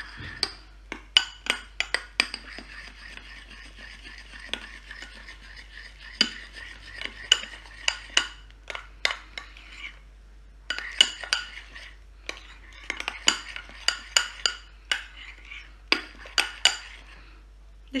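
A spoon clinking and scraping irregularly against a glass bowl as softened, microwave-melted marshmallows are stirred, with a short pause about ten seconds in.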